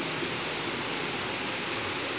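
Small waterfall and stream rushing over rocks: a steady, even rush of water.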